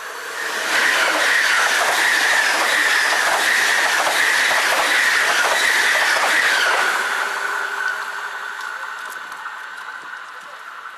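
A Deutsche Bahn ICE high-speed electric train passing at speed close by: a loud rush rises within the first second, with rapid wheel clicks over the rail joints, then fades away after about seven seconds. A steady high tone runs underneath and carries on after the train has gone.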